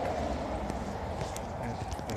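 Footsteps on a concrete porch with a few light handling knocks, over a steady low rumble.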